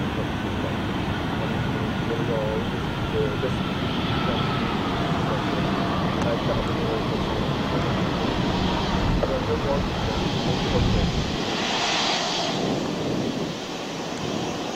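Airbus A320's twin jet engines running as the airliner rolls past close by: a steady rushing noise, with a brighter whine swelling about twelve seconds in.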